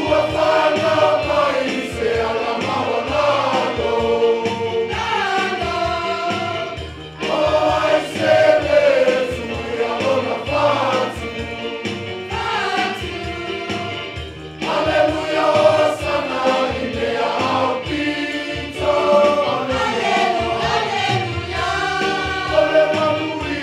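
A Samoan church choir of adults and children singing a hymn together. It sings in phrases of several seconds each, with strong new entries about 7 and 15 seconds in.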